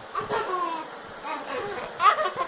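A young child laughing, a falling laugh about half a second in, then softer laughter.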